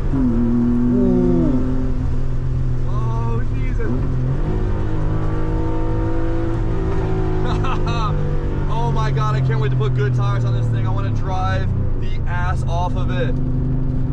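Porsche 964's air-cooled flat-six heard from inside the cabin while being driven on track, the engine note sliding in pitch early on and then holding steady. A man's voice talks over it in the second half.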